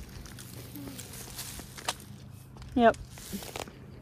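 Footsteps of a person walking on a rural road, a few soft steps under a faint steady low hum.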